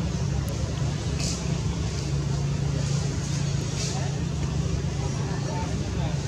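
A steady low motor-like hum, as of a vehicle engine running, with a few faint, brief hissy sounds higher up.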